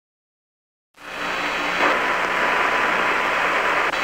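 About a second of silence, then steady hiss of radio static from the Apollo 11 lunar-surface transmission, fading in and holding.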